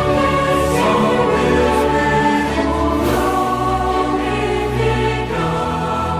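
Music: a choir singing slow, sustained chords.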